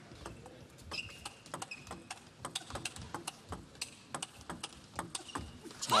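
Table tennis rally: the ball clicking sharply off the rackets and the table in quick, irregular succession.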